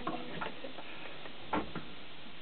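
Faint scattered clicks and knocks from a guitar being handled as the player gets up, with a soft bump about one and a half seconds in, over a steady background hiss.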